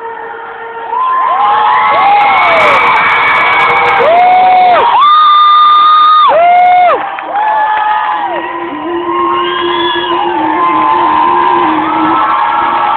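Concert audience cheering and screaming, with many high shrieks and whoops rising and falling over one another. It is loud throughout and gets louder about a second in.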